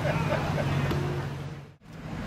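A vehicle engine idling with a steady low hum. It fades and drops out almost completely near the end.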